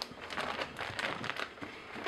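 Heavy-duty plastic Ziploc bags stuffed with clothes crinkling and rustling as a hand moves over and presses them, in irregular scratchy bursts.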